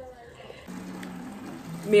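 Water rushing as a roof is washed, a steady hiss with a low hum underneath that swells up about two-thirds of a second in; a big racket.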